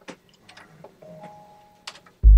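Quiet clicks and taps of fingers pressing the buttons and pads of an MPC drum machine, a handful of separate clicks, with a faint steady tone held for most of the second half.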